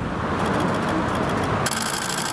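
A motor running steadily with a rapid, even rattle, which grows sharper shortly before the end.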